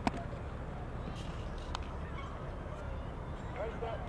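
A baseball pops into a catcher's leather mitt once, sharp and loud, right at the start, with a fainter click just under two seconds later, over a steady outdoor background.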